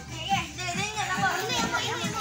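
Children's voices calling out as they play.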